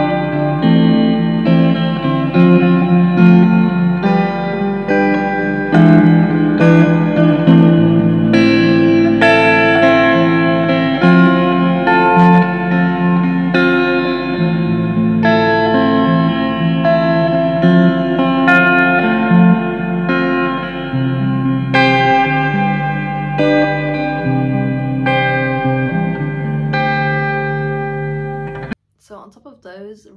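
Clean electric guitar chords played through an Electro-Harmonix Oceans 11 reverb pedal on its plate setting, each chord ringing out into the next with a long reverb tail. The playing cuts off abruptly about a second before the end, and a woman starts talking.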